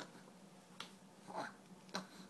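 Three short, sharp, wet clicks and smacks as a baby eats banana, from his mouth and from his hands on the high-chair tray.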